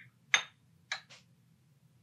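Metal cupping spoon clinking against a small glass of brewed coffee: a light click, then one sharp ringing clink, then two softer taps about a second in.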